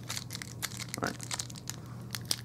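Clear plastic packaging crinkling and crackling as it is handled and pulled open, a run of irregular sharp crackles.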